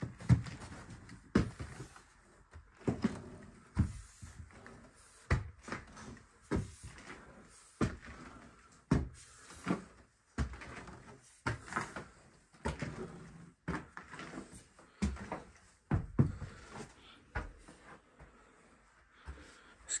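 A series of irregular wooden knocks and thumps, about one a second, from footsteps and objects being bumped while someone moves through clutter in a small room.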